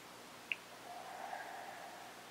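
A child's slow, faint breath during a mindful breathing pause, preceded by a small mouth click about half a second in.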